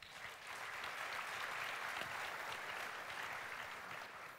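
Audience applauding: a dense patter of many hands clapping that builds within the first half second and then holds steady.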